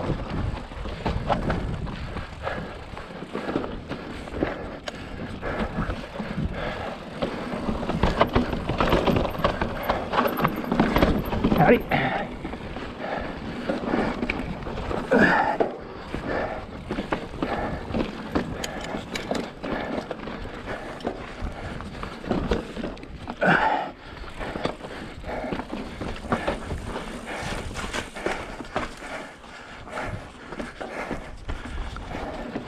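Mountain bike clattering over rock ledges, heard from a handlebar-mounted camera: a dense run of knocks and rattles from the frame, chain and tyres, loudest about a third of the way in.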